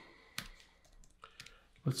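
One sharp click about half a second in, then a few faint ticks: keystrokes on a computer keyboard during code editing. A man's voice starts a word near the end.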